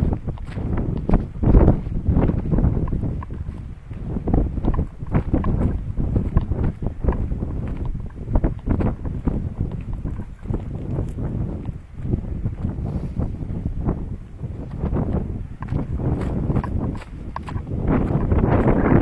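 Wind buffeting the microphone in uneven gusts, with footsteps on a dirt path.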